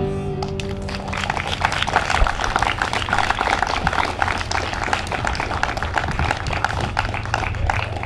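The last sung note and acoustic guitar chord of a song fade out in the first half second, then an outdoor audience applauds steadily.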